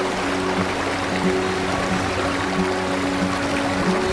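Background music with held notes over a regular low pulse.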